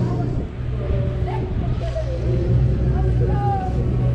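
MACK Extreme Spinning Coaster car rumbling along its steel track, a steady low running noise, with voices over it.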